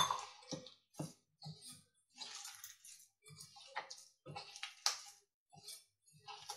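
Hands squishing and kneading a sticky dough of powdered poha, rice flour and jaggery syrup in a steel bowl, in short irregular wet bursts. It opens with one sharp knock, a steel tumbler set down on the counter.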